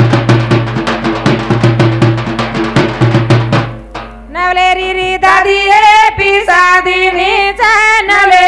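A fast drum rhythm over a steady low drone plays and stops about four seconds in; a woman's voice then comes in, singing a Banjara wedding song into a microphone with the notes bending and sliding.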